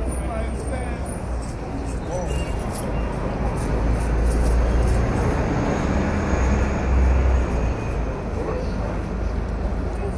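Busy city street ambience: a steady traffic rumble from cars and buses, with the chatter of passing pedestrians. The deep rumble swells for a few seconds around the middle.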